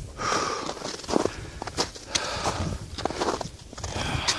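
Footsteps crunching on a thin layer of snow and ice over a gravel trail. The steps are irregular and come on a steep downhill slope.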